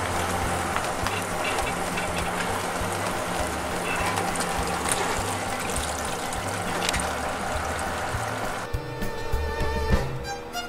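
Water rushing and splashing around boat trailer wheels as the trailer backs down the ramp into the lake, over background music. The water noise cuts off suddenly near the end, leaving only the music.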